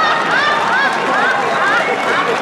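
Audience laughter from many people, a dense, steady mix of overlapping laughing voices after a joke's punchline.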